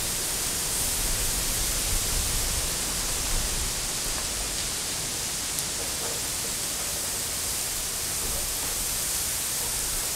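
Garden hose spraying water steadily onto a crushed-gravel paver base, moistening the gravel so it compacts better when tamped.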